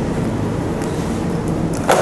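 Steady rushing background noise with no speech, and a short, louder hiss near the end.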